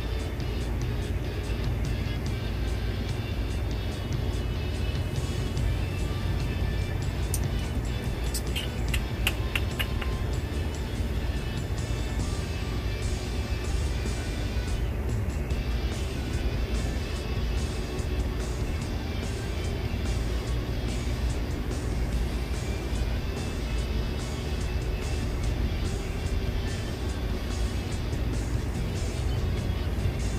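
Background music with a strong, steady low bass; about eight to ten seconds in, a quick run of about seven bright clicks.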